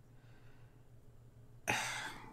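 Near silence, then near the end a man lets out one short, forceful burst of breath that starts suddenly and fades within about half a second.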